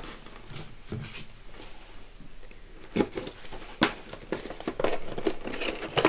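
Cardboard box of a heat embossing stamp kit being handled and opened by hand: scattered rustles and clicks, two sharper snaps about three and four seconds in, then a quick run of small crackles near the end.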